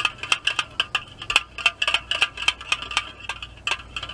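A utensil clinking rapidly and unevenly against a bowl, about five or six light ringing clicks a second, as ingredients are stirred together.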